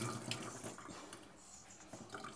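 Faint dripping and trickling water in a tiled bathtub, with a few small clicks and rustles, as a wet puppy is lifted out in a towel.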